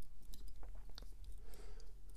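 Faint, scattered small clicks and crackles of fly-tying thread being wound from a bobbin around a hook, binding down foam.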